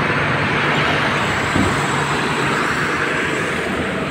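Hero Xtreme 160R 4V single-cylinder motorcycle engine running as the bike is ridden off, mixed with steady street traffic noise.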